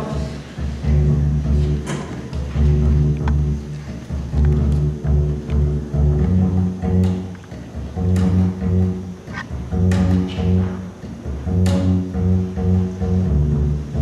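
Double bass playing a slow line of low, sustained notes, alone.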